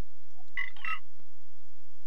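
Windows error alert chime, two quick notes, as an error dialog pops up because the installer failed to replace an existing file.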